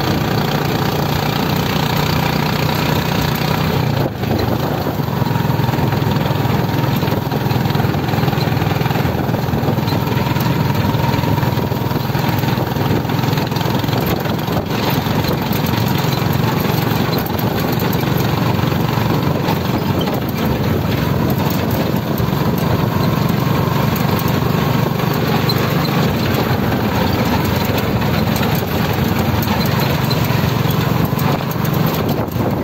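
Motorcycle engine running steadily while riding, heard from the rider's seat with wind noise on the microphone, with a brief drop in the engine sound about four seconds in.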